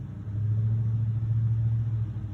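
A low, steady hum or rumble, like a motor running, that swells up about a third of a second in and holds at one pitch.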